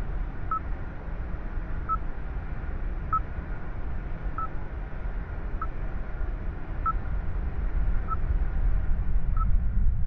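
Countdown sound design: a short, high electronic beep about every second and a quarter, over a steady low rumble and faint hiss that grows slowly louder.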